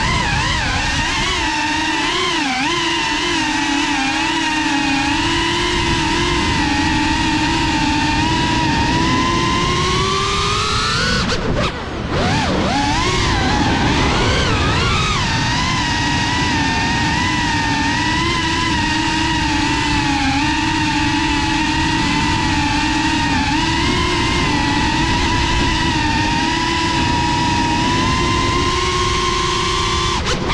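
Whine of a GEPRC Cinelog 35 6S cinewhoop FPV drone's motors and ducted propellers in flight. The pitch shifts with throttle: it climbs about ten seconds in, drops and wavers briefly, then holds steady.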